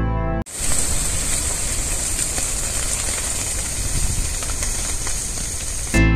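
A scrub fire burning in the open: a steady, dense hiss with a strong high hiss on top, cutting in about half a second in.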